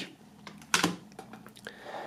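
A plastic CD jewel case set down on a wooden tabletop. There is one sharp clack just under a second in, followed by a few fainter clicks of handling.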